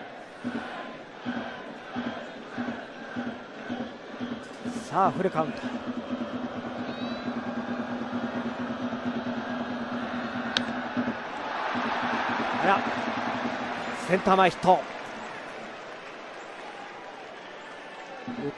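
Baseball stadium crowd noise with a steady rhythmic beat. A single sharp crack of the bat comes about ten and a half seconds in as a pitch is hit, followed by a swelling crowd cheer.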